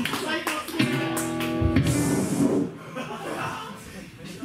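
Band between songs on stage: a few hand claps, then an electric guitar chord rings steadily for about a second and is cut off by a drum hit with a cymbal wash that dies away.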